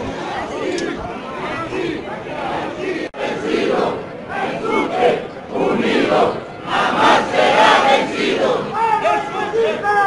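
Large crowd of protesting teachers shouting together in loud group voices. The sound breaks off for an instant about three seconds in and comes back louder, with swells of shouting through the rest.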